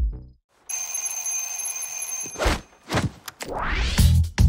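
Trailer soundtrack: the last hit of a drum-machine beat, a brief gap, then a steady high electric alarm bell ringing for about a second and a half. A whoosh, a hit and a rising sweep follow.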